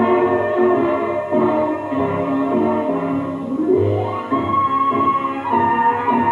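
Dance-band music played by an orchestra, with a rising slide in pitch about three and a half seconds in.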